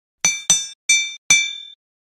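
Two triangular metal rulers struck against each other four times, each strike a bright metallic clink that rings with a high bell-like tone and fades.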